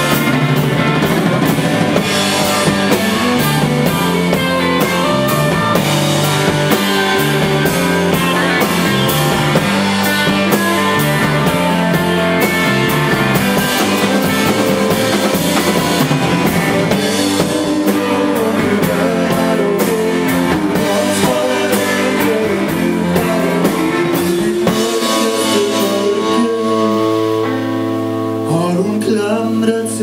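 Live rock band playing psychedelic blues rock on electric guitars, electric bass and drum kit. About 25 seconds in, the drums drop out and the guitars and bass hold long sustained notes.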